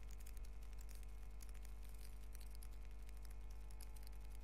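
Metal knitting needles clicking faintly and irregularly against each other as stitches are worked, over a steady low hum.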